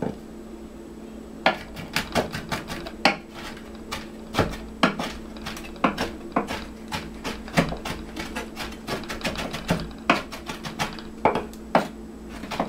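Knife chopping on a cutting board: quick, irregular strokes, several a second, starting about a second and a half in, over a steady low hum.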